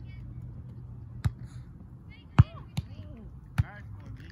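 A volleyball being struck by hands and forearms in a rally: four sharp smacks, one about a second in, the loudest a little after midway followed closely by another, and one near the end. Voices call out between the hits.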